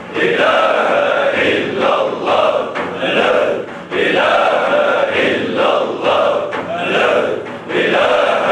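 Group of men chanting a Sufi dhikr together, loud and rhythmic. The chanted phrase breaks off briefly for breath about every four seconds.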